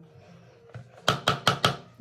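A quick run of about five sharp clicking taps, starting about a second in and over within about half a second.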